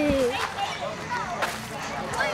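Children's voices at play: a long falling shout that ends just after the start, then scattered distant calls, with two sharp cracks, one right at the start and one about a second and a half in.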